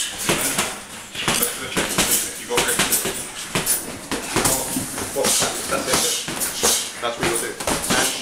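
Boxing gloves landing punches in sparring: many short, sharp smacks in quick, irregular succession.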